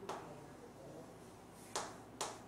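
Chalk tapping against a blackboard in short strokes: two sharp clicks, one at the start and one near the end.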